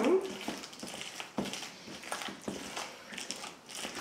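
Wooden spoon stirring a thick mashed-potato and egg mixture in an enamel bowl: irregular soft squelches and scrapes with a few sharper knocks of the spoon.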